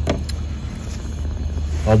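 Propane fire pit burner running: a steady low rush of gas flames, with two light clicks near the start.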